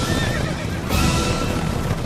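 A herd of horses galloping, hooves pounding, with a horse whinnying near the start, over orchestral film music.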